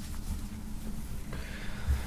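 Faint rustling of a cotton T-shirt being folded on a wooden table, a little louder in the second half, over a steady low hum.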